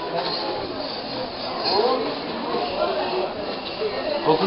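Crowd chatter in a busy covered bazaar: overlapping voices of shoppers and vendors blending into a steady murmur, with no one voice standing out.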